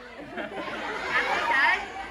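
Indistinct talking and chatter from several voices, softer than the microphone speech around it.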